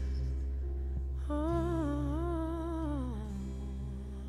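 Worship music winding down: a woman's wordless sung note with vibrato, held for about two seconds and then falling away, over a steady low instrumental drone.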